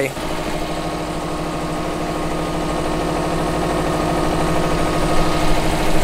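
Subaru Legacy's flat-four boxer engine idling steadily, growing slightly louder toward the end.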